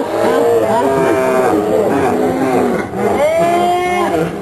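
Several people's voices overlapping, laughing and calling out, with one long drawn-out vocal call from about three seconds in.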